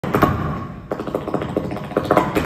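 Flamenco dancer's zapateado footwork: shoe heels and toes striking the stage floor, a couple of strong strikes just after the start, then a quick even run of about five or six strikes a second.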